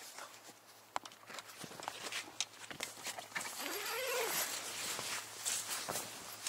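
Climbing a telescopic aluminium ladder into a rooftop tent: scattered knocks and clicks on the ladder and frame, and tent fabric rustling that grows louder in the second half. About four seconds in there is a short tone that rises and falls.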